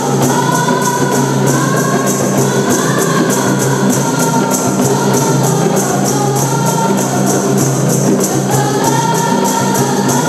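A group of girls singing a qasidah together, accompanied by a steady beat on rebana frame drums.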